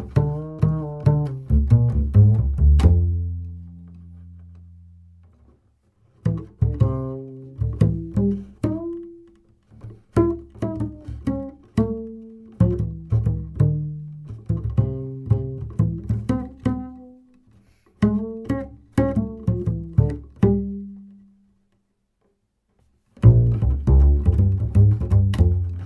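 1960 Otto Rubner double bass strung with Gut-a-Like SwingKing synthetic gut-substitute strings, played pizzicato. A groove line ends about three seconds in on a low note that rings out. After a pause a thumb-position phrase of higher plucked notes runs to about 21 seconds, and a new line starts near the end.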